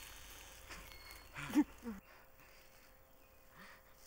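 Faint outdoor background hush, with one short vocal sound from a person, a brief grunt or exclamation, about a second and a half in; the hush drops off suddenly halfway through.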